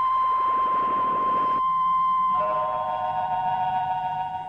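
Electronic science-fiction sound effect of a time machine running: steady high synthesizer tones with a rush of hiss over the first second and a half. A lower set of tones joins about two and a half seconds in.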